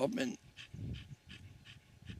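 A dog panting, fast and faint, about four to five breaths a second.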